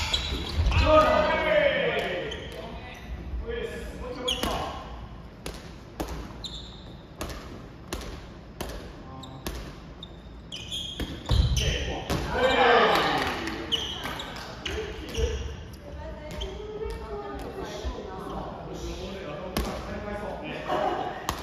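Soft volleyball rally in a reverberant gym hall: repeated short slaps of hands hitting the light rubber ball, with players' voices calling out, loudest about a second in and again around twelve seconds.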